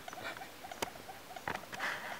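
An animal calling in a fast, even series of faint chirps, about six a second, with a sharp click about a second in.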